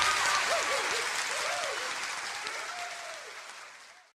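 Audience applause right after the song ends, with a few voices calling out, fading out steadily to silence.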